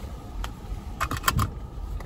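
Handling noise of a phone camera: a sharp click about half a second in, then a quick run of taps and knocks around a second in as fingers grip and move it. Underneath runs the low steady hum of a car with its engine running.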